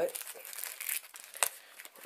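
Crinkling and rustling of packaging being handled as a small parts box is unpacked, with a few sharp clicks, the loudest about one and a half seconds in.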